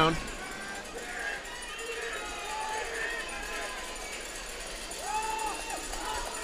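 Faint distant voices calling out over open-air stadium ambience, with a brief louder call about five seconds in.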